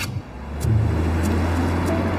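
A car driving along a street: engine hum and road noise come up about half a second in and hold steady.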